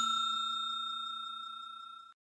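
Notification-bell chime sound effect ringing out after being struck, its tones fading steadily and then cut off abruptly at the end.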